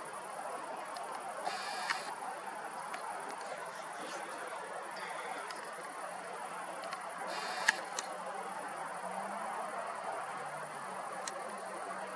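Faint steady outdoor background noise picked up by a handheld camera's microphone, with a few small clicks and handling noises from the camera as it is moved, one sharper click a little before eight seconds in.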